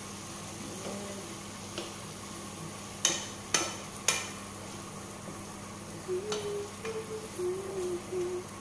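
Wooden spoon stirring thick masoor dal in a frying pan over a steady sizzle, with three sharp knocks of the spoon against the pan about three to four seconds in.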